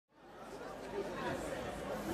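A crowd of people chatting, fading in from silence.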